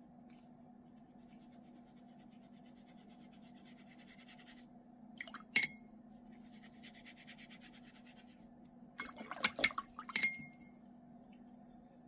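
A watercolour brush scratching faintly over paper as a swatch is painted, broken by a paintbrush clinking against a glass water jar: one sharp clink about five and a half seconds in and a quick run of clinks near the end, each ringing briefly.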